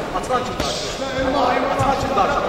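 Dull thuds of a boxing bout, from boxers' shoes on the ring canvas and gloved punches, mixed with voices in the hall.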